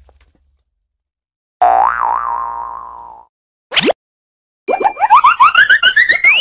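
Cartoon sound effects: a wobbling tone that sinks over about a second and a half, then a quick upward swoop, then a run of short rising chirps that step higher and higher.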